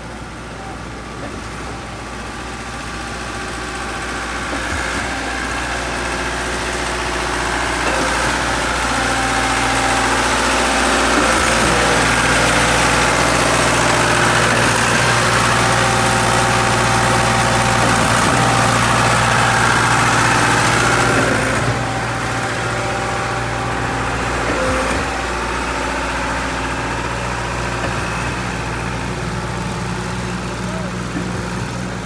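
Diesel engine of a Putzmeister concrete pump running steadily at about 1,700 rpm while pumping ready-mix concrete at full output. The sound grows louder over the first dozen seconds, holds, then drops back somewhat about two-thirds of the way through.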